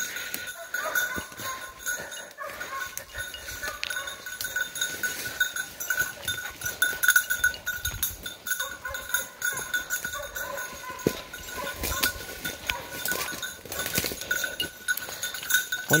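A bell on a bird dog's collar ringing steadily in a quick pulsing jingle as the dog works through thick brush, over the crackle and rustle of brush and footsteps.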